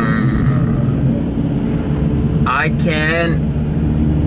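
Car engine idling, a steady low hum heard from inside the cabin. A man's voice makes two brief wordless sounds, one right at the start and one a little before the end.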